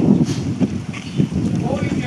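Indistinct voices over a steady low rumble of wind buffeting an outdoor microphone.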